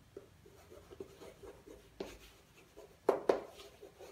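Chalk writing on a chalkboard: faint scratching strokes, with two sharp taps of the chalk against the board about three seconds in.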